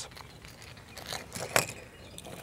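Hard plastic fishing lures and their treble hooks clicking and jingling as they are handled and set down, with a few light clicks and the sharpest one about a second and a half in.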